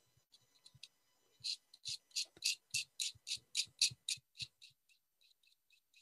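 A knife blade scraping a stick of soft pastel into dust in quick, short, even strokes, about four a second. The strokes are faint at first, strongest in the middle, and lighter again near the end.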